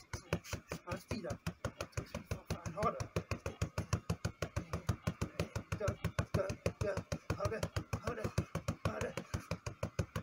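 A rapid, steady flurry of gloved punches hitting a handheld strike shield, about six impacts a second.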